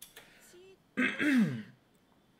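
A man clears his throat once, about a second in: a harsh burst, then his voice falls in pitch.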